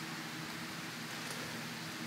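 Quiet, steady room tone: an even hiss with a low hum, from a large floor fan running.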